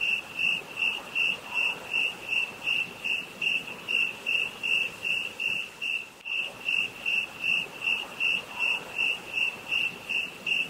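Cricket-chirp sound effect: one high, even chirp repeating nearly three times a second over an otherwise quiet track, the classic comic cue for an awkward, blank silence.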